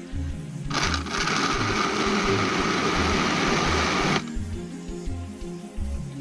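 Electric countertop blender running for about three and a half seconds, starting about a second in and cutting off suddenly, as it purees chopped fruit into juice.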